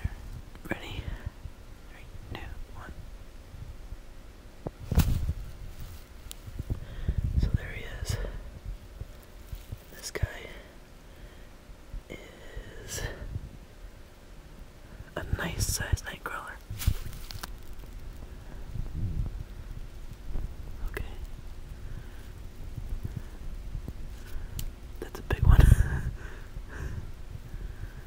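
A man whispering softly, with rustling and scattered low thumps of handling; the loudest thump comes near the end.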